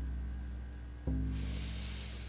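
A deep, low music note sounding twice, about a second and a half apart, each starting suddenly and slowly fading. In the second half a long, audible breath drawn in through the nose, a slow deep inhale.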